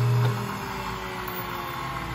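1951 Delta 13x5 planer's original electric motor humming, then switched off with a click of its push-button about a quarter second in; the hum drops sharply and the machine coasts down, its remaining tones sinking slowly in pitch.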